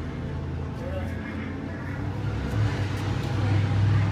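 A motor vehicle's engine running, a low steady hum that grows louder about two and a half seconds in, with faint voices in the background.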